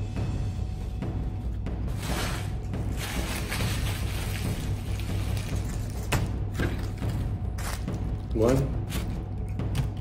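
Background music with a steady low bass runs under crinkling and rustling of foil and paper food wrappers being handled. The crinkling is thickest a couple of seconds in, with a few sharp crackles later on.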